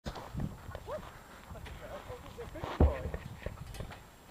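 Voices in the background with scattered knocks, and one loud thud just under three seconds in.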